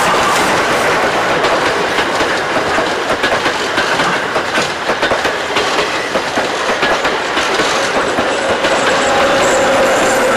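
Vintage passenger coaches rolling past close by, their wheels clicking over the rail joints in a steady clickety-clack. The electric locomotive at the tail of the train goes by last, with a faint steady whine near the end.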